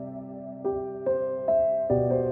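Slow, gentle new-age piano music: sustained notes ringing on, with fresh notes struck roughly every half second in the second half.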